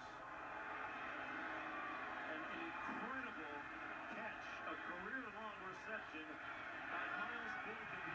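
Football telecast heard through a television's speakers: steady stadium crowd noise with brief snatches of voices over it.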